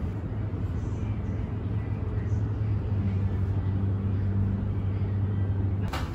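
A steady low hum over a rumbling background noise, cutting off suddenly near the end.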